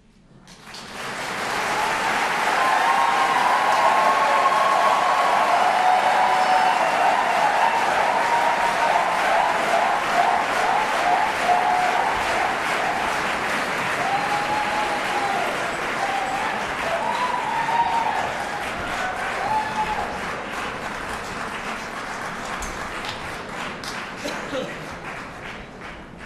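Audience applause breaking out about half a second in, right after the a cappella song ends, with a few calls from the crowd over it; it stays loud and eases off near the end.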